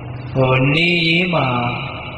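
A Burmese Buddhist monk's voice intoning one drawn-out, chant-like phrase. It starts about half a second in, rises in pitch, then falls away.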